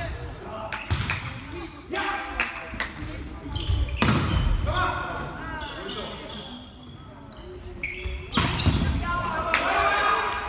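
Volleyball rally in a sports hall: a series of sharp smacks as the ball is hit back and forth, with players shouting calls in between, echoing off the hall walls.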